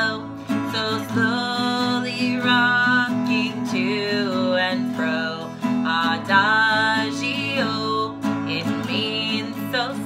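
A woman singing a children's song while strumming an acoustic guitar, the melody carried in long held notes over the steady strummed chords.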